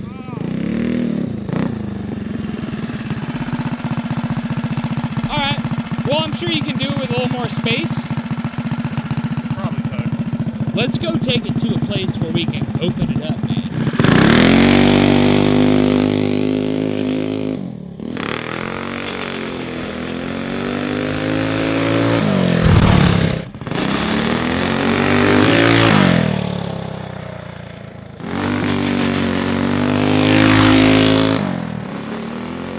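Small single-cylinder go-kart engine, fitted with a hot cam and torque converter, running at a steady low speed for roughly the first half, then revving hard through several accelerations, its pitch rising and falling repeatedly, with one sudden drop about two-thirds of the way in.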